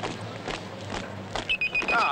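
Town street noise of traffic and people, then about one and a half seconds in a pelican crossing's bleeper starts a rapid, high-pitched bleeping. The bleeping signals that the green man is lit and it is safe to cross.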